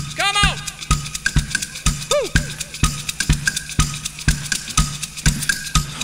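Live drum-kit break in a children's pop song: bass drum and snare keep a steady beat of about two hits a second, with quicker cymbal ticks between them over a low bass note. Two short rising-and-falling vocal whoops come in near the start and about two seconds in.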